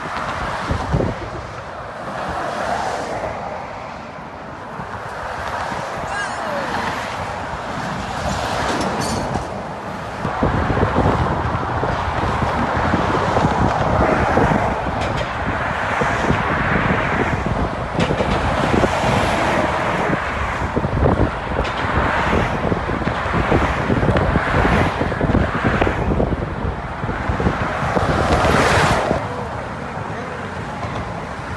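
Road traffic on the Golden Gate Bridge: a continuous rush of cars and trucks passing close by in the lanes beside the sidewalk, with a deep rumble. It grows louder about ten seconds in and drops off just before the end.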